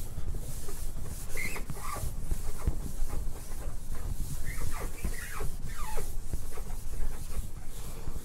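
Writing on a board: a run of scratching strokes with several short squeaks that slide downward in pitch.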